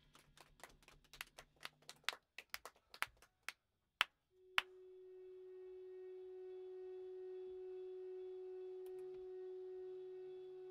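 A run of light, irregular clicks and taps, with two sharper clicks about four seconds in. Then a single held electric guitar note rings through the amplifier, swelling slowly.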